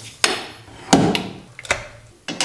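Sharp clicks and knocks from handling a Focusrite audio interface and cable plug on a stone countertop: four knocks, the loudest about a second in.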